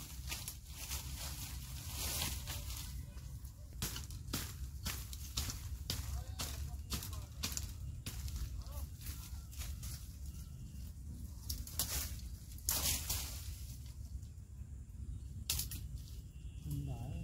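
Dry grass, reeds and twigs rustling and crackling as a person pushes through bankside vegetation: a string of irregular sharp crackles over a low steady rumble.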